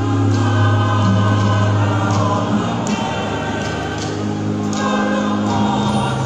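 A church choir singing a hymn in long held notes over a steady low note.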